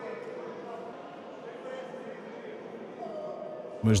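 Background of a large sports hall during a wrestling bout: faint, distant voices of spectators and coaches over a steady room hum. A man's voice comes in close and loud near the end.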